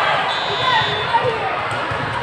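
Echoing din of a busy indoor volleyball hall: many voices talking at once, with volleyballs bouncing and being hit on the courts. A short, steady high whistle blows about a third of a second in.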